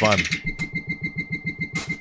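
Electronic intro sound of an online news video played back over studio speakers: a fast, even pulse of about eight beats a second under a steady high tone.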